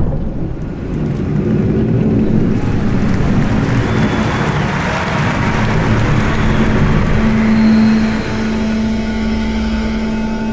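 Sound design from a show soundtrack: a rushing, engine-like swell that builds over a low rumble, then settles into a steady low drone about seven seconds in.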